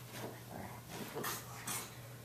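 English Bulldog making short breathy sounds at close range, two of them in the second half.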